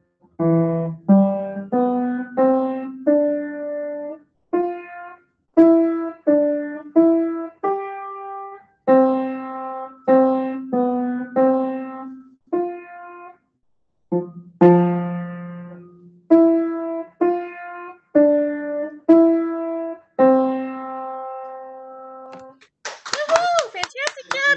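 A child playing a simple beginner piano piece, mostly one note at a time with a few longer held notes, heard over a video call whose audio drops to silence between some notes. The piece ends and hand clapping starts near the end.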